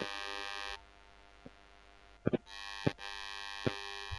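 A steady electronic buzzing tone that sounds for under a second, stops, then returns for the last second and a half, with a few sharp clicks in between.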